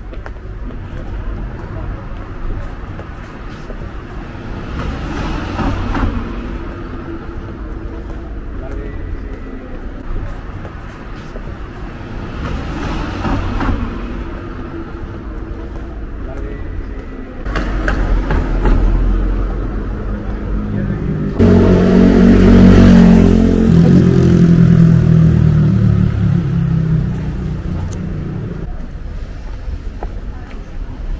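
Town street ambience with passers-by talking, and a motor vehicle's engine running close by, suddenly much louder a little after the middle and fading near the end.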